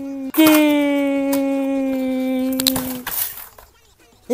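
A boy's drawn-out yell, one held note that slowly falls in pitch, broken briefly just after the start and then held again until almost three seconds in. It ends in a short breathy rush, and the last second is quiet.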